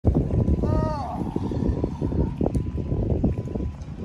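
Wind buffeting the microphone in an uneven low rumble, with a short falling call from a person's voice about a second in.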